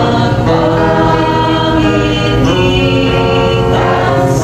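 A group of voices singing a slow hymn together in long held notes, with a steady low accompaniment underneath.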